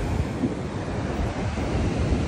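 Ocean surf breaking and washing up the beach, a steady rush, with wind rumbling on the microphone.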